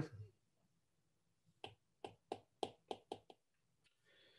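A stylus tapping on a tablet screen while handwriting: about seven faint, short clicks over a second and a half, starting about one and a half seconds in, against near silence.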